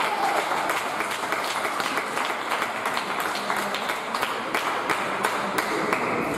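Spectators applauding after a table tennis point: many hands clapping irregularly and steadily.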